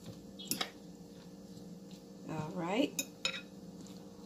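Coleslaw being tossed by hand in a ceramic bowl, with a few sharp clinks against the bowl about half a second in and twice near the end. A woman's brief hum a little after two seconds in, over a steady faint low hum.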